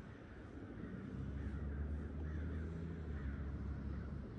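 A few short bird calls, likely crows cawing, over a steady low rumble that rises about a second in.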